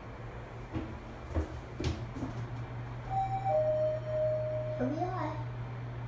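Descending elevator car with a steady low hum and a few knocks in the first two seconds. About three seconds in comes a two-note falling chime, the second note held for over a second, followed by a short announcement voice as the car reaches its floor.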